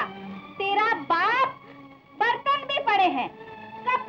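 Speech: a woman talking animatedly in short bursts, her pitch rising sharply about a second in, over faint steady background music.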